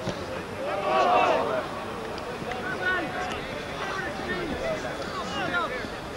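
Indistinct shouting and calling from football players and touchline spectators, with one loud shout about a second in and scattered shorter calls after it, over a steady background hiss.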